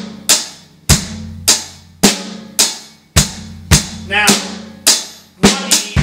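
Drum kit playing a slow, easy rock beat on hi-hat, snare and kick, a stroke about every half second, with the kick drum ringing low under some strokes. Near the end the strokes quicken into sixteenth notes as a repeating snare, hi-hat, kick grouping begins.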